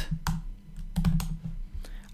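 Keystrokes on a computer keyboard: a handful of separate key presses as short terminal commands are typed and entered.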